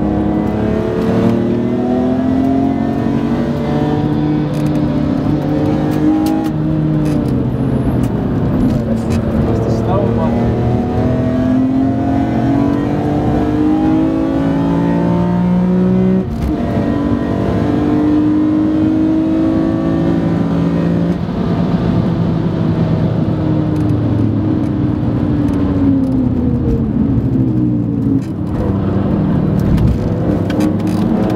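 Car engine heard from inside the cabin during hard track driving, its pitch climbing under acceleration and falling back at gear changes and braking, with a sudden drop about halfway through and another near the end.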